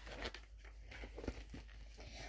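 Faint rustle and a few soft taps as a picture book's pages are handled and turned.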